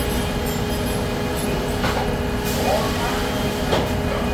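Steady factory machinery noise from a tractor-frame production cell: a low rumble with a steady hum, broken by a few short metallic knocks, one just under two seconds in and another near the end.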